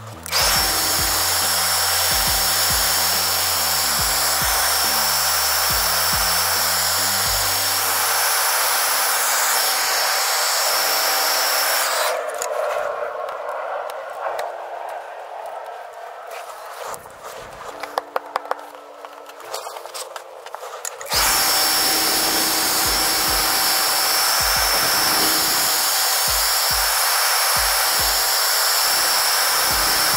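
Handheld TRESemmé hair dryer blowing steadily with a high motor whine, heating a sticker to loosen its glue. It is switched off about twelve seconds in and switched back on about nine seconds later.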